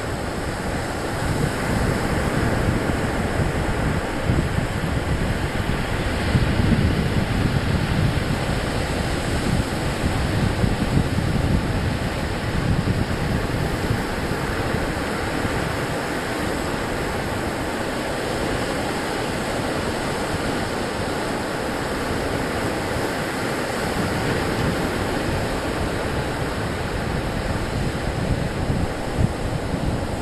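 Ocean surf breaking steadily on the beach, with wind buffeting the microphone in gusts that are strongest for several seconds in the first half.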